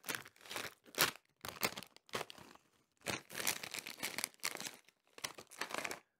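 Foil-lined plastic snack bag of Cheetos crinkling and rustling as it is pulled open and handled, in a string of irregular crackly bursts with short pauses between them.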